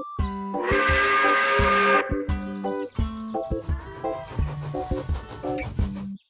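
A cartoon steam-train whistle blast, breathy and pitched, lasting just over a second, as the toy train sets off. It is followed by hissing steam under a bouncy children's music cue.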